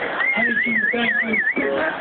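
A high whistle that warbles up and down about four times a second for about a second and a half, over voices.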